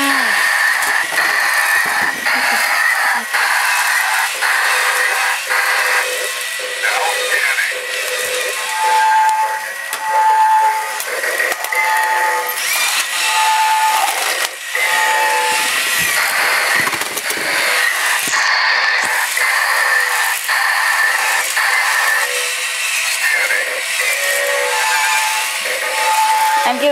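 Battery-powered toy robots walking, their small motors and gears whirring and clicking, under electronic sound effects and synthesized voice and music from their built-in speakers. A run of short, evenly spaced beeps sounds about a third of the way in.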